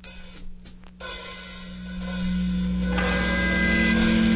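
Straight edge hardcore band building into a song: light cymbal taps over a held low note, then a sustained chord comes in about a second in and swells steadily louder.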